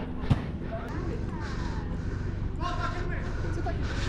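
Distant shouting and calling of players across an outdoor football pitch, heard faintly, with a single sharp knock shortly after the start.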